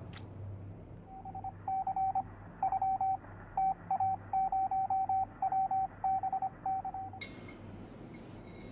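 A single high-pitched electronic beep keyed on and off in short and long pulses, in a Morse-code-like rhythm, over a low steady hum.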